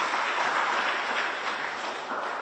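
Audience applauding, a steady wash of many hands clapping that eases off slightly near the end.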